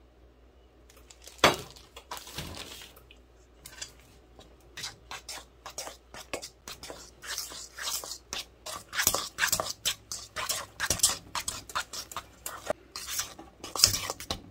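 A fork beating cream cheese frosting by hand in a stainless steel bowl, its tines clinking and scraping against the metal in a quick, uneven rhythm that gets busier towards the end. A single sharp knock comes about a second and a half in.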